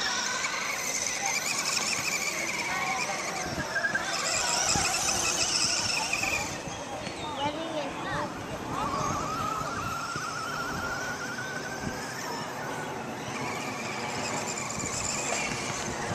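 Traxxas Rustler RC truck's Velineon brushless electric motor whining at a distance, the pitch gliding up and down as the throttle is worked, with the motor system set to Training Mode.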